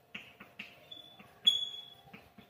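Chalk writing on a blackboard: quick taps and scrapes of the chalk stick as letters are formed, with a short high-pitched chalk squeak about one and a half seconds in, the loudest sound here, and a fainter one just before it.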